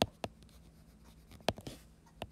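A stylus writing by hand on a tablet screen: a few sharp taps and light scratches as a word is written, the loudest tap at the very start and another about a second and a half in.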